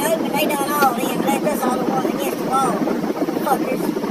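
Speech only: a man talking steadily over a constant low hum.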